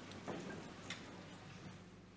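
A few faint, sharp ticks, unevenly spaced, with the strongest just under a second in, over a low steady hum.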